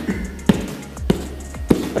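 Cupped-hand back blows landing between the shoulder blades on the padded back of a choking-training vest: three sharp slaps about half a second apart, over background music.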